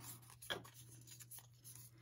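Faint handling of a strip of cardstock: a few soft paper rustles and taps, about a second apart, over a low steady hum.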